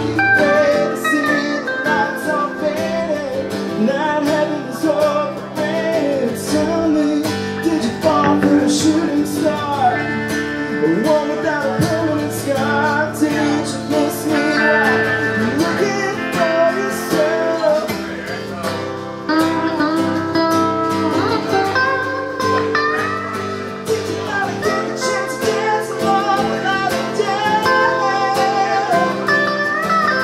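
Live acoustic guitar strumming together with an electric guitar playing a lead line.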